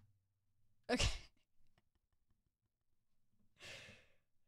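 A woman's short, breathy exhale near the end, like a soft sigh or a laugh through the nose, after a loud single spoken word about a second in.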